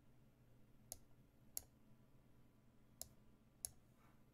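Four sharp computer mouse clicks, in two pairs about two seconds apart, as a chess piece is picked and placed on an online board.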